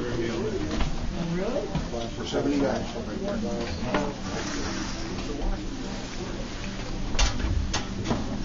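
Indistinct voices of people talking in a small room over a steady low hum, with two sharp knocks near the end.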